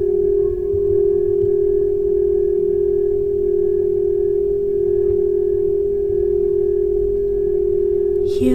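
Crystal singing bowl ringing as one long, steady tone, with a slight waver in it and faint higher tones above.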